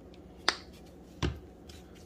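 Two sharp clicks about three-quarters of a second apart, the second with a low knock: a plastic squeeze bottle of balsamic being handled and set down on the countertop.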